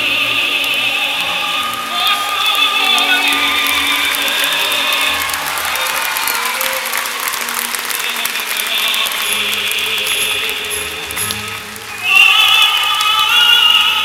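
Operatic singing with musical accompaniment, played back for a skating routine. The voice thins out in the middle and comes back strongly about twelve seconds in, after a brief dip.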